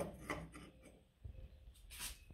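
Faint rubbing and handling noises as one cut steel exhaust pipe bend is fitted against another held in a bench vise.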